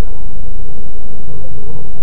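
Bus engine idling: a steady low rumble with a constant hum, recorded very loud.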